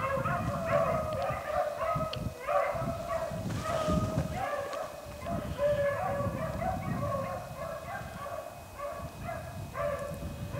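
A pack of beagles baying on the track of a freshly jumped rabbit, many short, overlapping calls running on without a break. A low rumble sits underneath.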